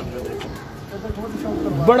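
Domestic pigeons cooing softly in the background, with a man's voice coming in near the end.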